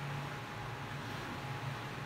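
Steady background hiss with a low hum that comes and goes.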